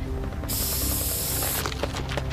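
An aerosol spray can hissing in one burst of about a second, over steady background music.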